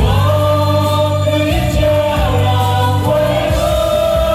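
Three male singers singing together into microphones in harmony, holding long sustained notes that shift pitch every second or so.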